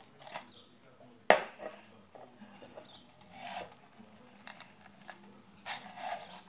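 Metal cookware being handled while a tapioca is turned in the pan. There is one sharp clank about a second in, then faint scattered clicks and brief scraping rubs.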